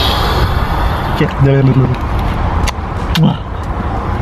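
Steady outdoor rumble and noise, with a short hummed voice sound about a second and a half in and another brief one near the end.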